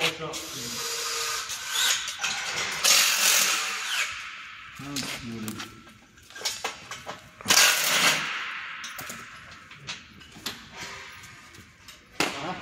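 A power tool running in two short bursts, each about a second long, about three seconds in and again near eight seconds.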